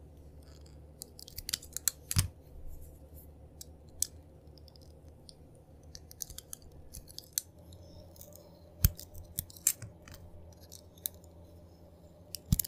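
Snap-off utility knife blade cutting into a bar of painted soap, giving sharp cracks and clicks in scattered clusters, loudest about two seconds in and again around nine seconds. A faint steady low hum runs underneath.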